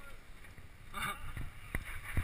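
Mountain bike rattling over a rough dirt trail, with low wind rumble on the microphone and a few sharp knocks in the second half as the bike hits bumps.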